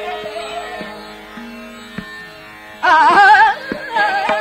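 Hindustani classical vocal in Raag Bihag: a woman singing over held accompanying tones, with tabla strokes. The music runs softer for the first couple of seconds, then the voice returns loud with a fast wavering phrase near the end.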